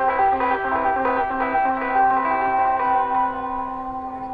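Electric guitar picking a quick repeating figure of short notes over a held low note, then letting the notes ring out and fade near the end.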